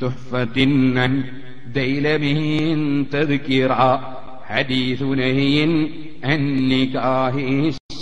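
A man chanting in Arabic in a drawn-out melodic style, holding long wavering notes in phrases separated by short breaths. The sound cuts out for a moment near the end.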